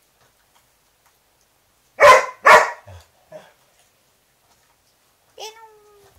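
A dog barking twice in quick succession, then a couple of softer barks, and a short drawn-out cry near the end.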